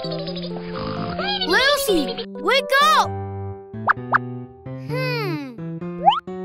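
Children's cartoon background music with short wordless character vocal sounds and sliding cartoon sound effects over it.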